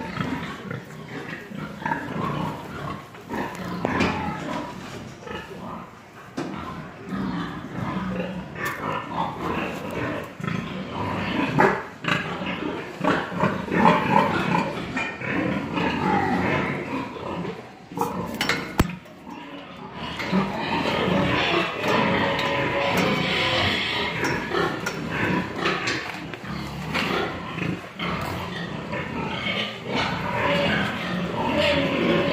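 Pigs grunting and squealing in a crowded sow barn, a continuous din of many animals that grows louder and steadier in the last third.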